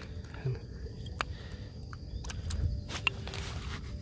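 Golden apple snail shells clicking against one another and against a plastic basket as hands sort through boiled snails: a few sharp separate clicks and some rustling over a low rumble.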